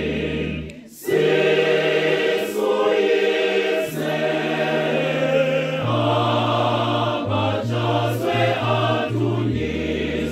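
Choir singing a Zulu church song, accompanied by an electronic keyboard holding long, steady low bass notes. The singing drops out briefly about a second in, then resumes.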